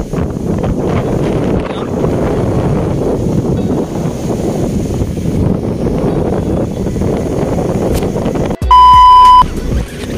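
Strong wind rumbling on the microphone, with surf noise mixed in. Near the end a loud, steady electronic beep lasts under a second.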